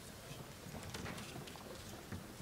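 Faint, irregular knocks and rustling from people moving about in a lecture hall, with no speech.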